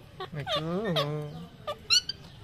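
Parakeet vocalizing at its reflection: a drawn-out, voice-like call that rises and falls in pitch, then a short, sharp high squawk near the end.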